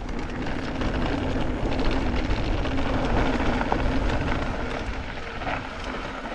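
Wind rushing over the camera microphone on a moving mountain bike, a heavy low rumble with tyre noise and scattered small rattles from the trail, and a faint steady hum beneath; it is loudest about two seconds in and eases toward the end.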